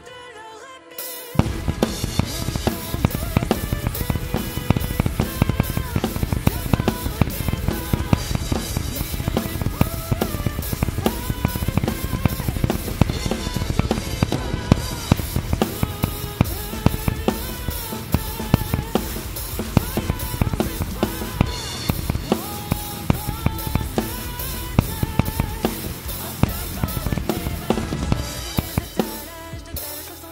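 Acoustic drum kit played along to a nu-metal backing track. After about a second of the track alone, kick drum, snare and cymbals come in and keep up a dense, driving beat, then drop back near the end.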